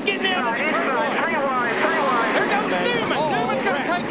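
Several voices talking excitedly over one another, over the steady drone of stock-car engines on a race broadcast.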